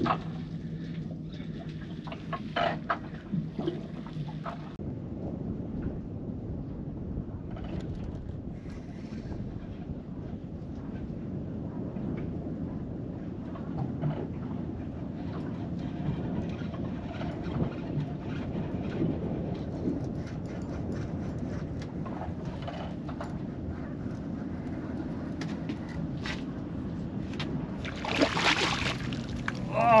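Steady low wind rumble on the microphone aboard an open boat on the water, with scattered light clicks and knocks.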